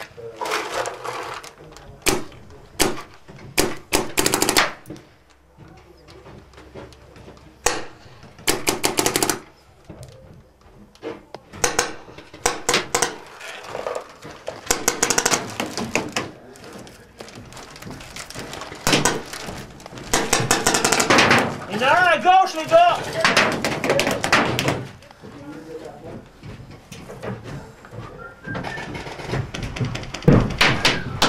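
Paintball markers firing in irregular bursts of sharp pops, with shouting voices around 21 to 24 seconds in.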